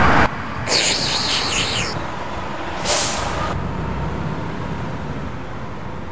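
Street traffic noise with a steady low rumble, broken by a loud hiss lasting about a second from just under a second in, and a second, shorter hiss near three seconds.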